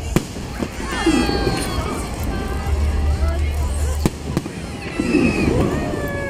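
Fireworks display: rockets and comets launching and bursting with several sharp bangs, the loudest right at the start, over the voices of people watching.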